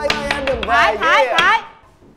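A young man's voice singing a parody song in a rap style, with sharp clicks and knocks among the words, breaking off abruptly about one and a half seconds in.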